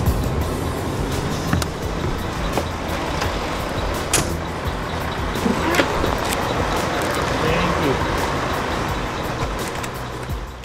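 A coach bus's engine running steadily at a bus stop, with people's voices in the background and a couple of sharp knocks about four and six seconds in.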